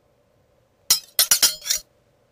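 Intro sound effect of sharp, bright clinks: a single strike, then a quick run of about four more a third of a second later.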